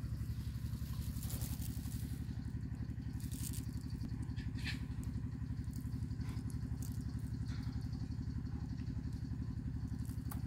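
A small engine idling steadily with a fast, even throb, with a few faint clicks and crackles over it.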